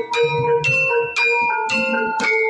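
Javanese gamelan playing: bronze metallophone bars (saron/demung) and bonang kettle gongs struck in a steady run of ringing notes, roughly four strokes a second.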